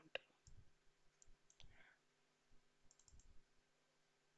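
Near silence with a few faint computer mouse clicks, including a quick run of three or four clicks about three seconds in.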